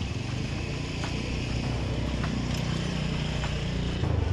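Outdoor street noise carried by a steady low vehicle-engine rumble, with a few faint clicks.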